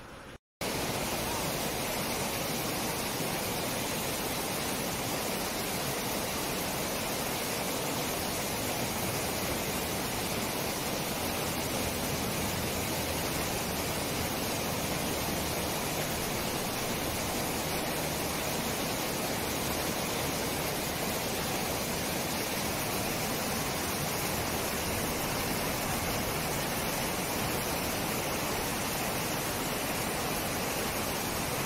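Mountain stream rushing over rocks in white-water rapids: a steady rush of water that starts abruptly after a brief silent gap about half a second in.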